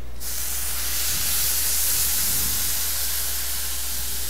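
Water poured into a pan of rice just toasted in oil, hissing and steaming as it hits the hot pan and grains. The hiss starts suddenly right at the beginning and holds steady.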